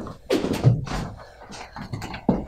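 Quick, irregular footsteps and sneaker scuffs on a carpeted floor as two people shuffle, lunge and dodge, a few short thuds and scrapes.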